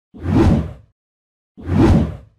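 Two whoosh transition sound effects, each swelling up and fading out in under a second, the second starting about a second and a half after the first.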